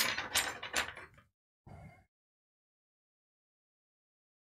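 A short clatter of small hard things being handled on the bench: three sharp clicks within about the first second, then a faint rustle near two seconds.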